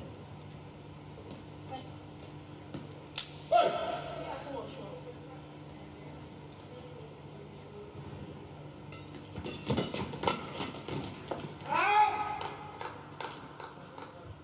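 A badminton rally: a quick run of sharp racket strikes on the shuttlecock in a large hall, ending with a loud, high squeal. Earlier, one sharp crack is followed by a similar squeal.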